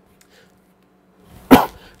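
A dog barking once: a single short, loud bark about one and a half seconds in, after near silence.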